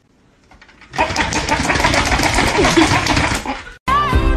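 A small motor, likely the handheld toy held toward the cat, starts about a second in and runs loud with a dense rattle, then cuts off suddenly just before the end.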